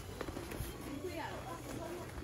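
Faint voices of people talking in the background, no words clear.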